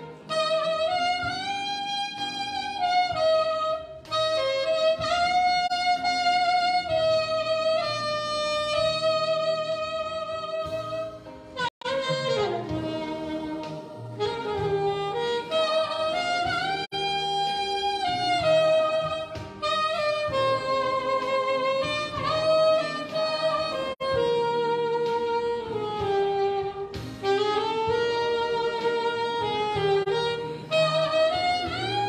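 Saxophone playing a slow melody of long held notes that slide between pitches, with a short break for breath about twelve seconds in.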